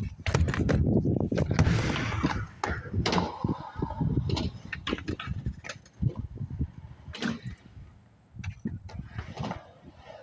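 Skateboard wheels rolling on concrete with sharp clacks of boards striking the ground. The rolling rumble is loudest in the first few seconds, followed by scattered separate clacks.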